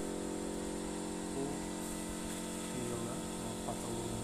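A machine running with a steady, even hum, with faint voices briefly heard in the background.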